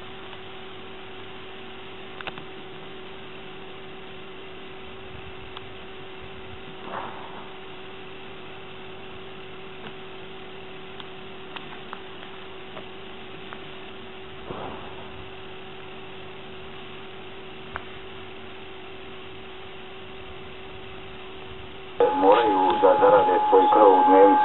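Steady electrical hum on an old videotape soundtrack, with a few faint clicks. About two seconds before the end, loud voices cut in suddenly over a steady high whistle tone.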